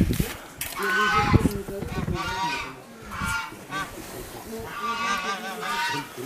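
Repeated honking bird calls in several short bursts, with some low rustling in the first second and a half.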